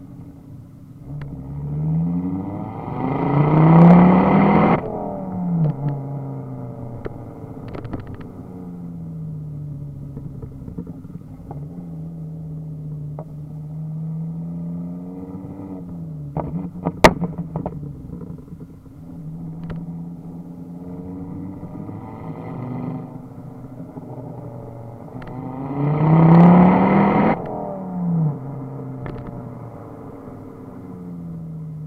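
Ford Focus ST 225's turbocharged 2.5-litre five-cylinder, heard at the exhaust tailpipe while driving: the revs climb hard twice, about three seconds in and again near the end, and drop back each time. Pops and crackles come off the exhaust as the throttle closes, with one sharp, very loud bang about 17 seconds in, the loudest sound here.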